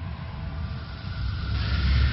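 A deep rumble with a rushing whoosh that swells about one and a half seconds in: a cinematic sound effect in an animated video intro.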